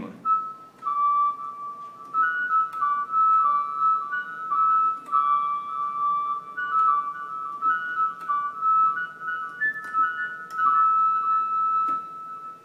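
A keyboard with a synth flute voice plays a quick single-line melody in a high register, one note at a time, stepping up and down through a phrase in Mohana raga.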